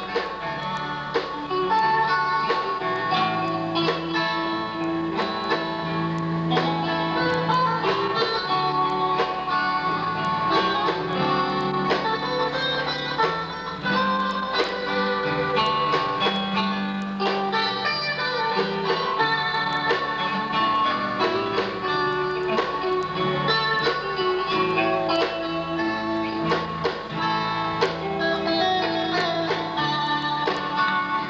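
Live instrumental played on acoustic guitars over an electric bass line, with busy picked notes and no singing.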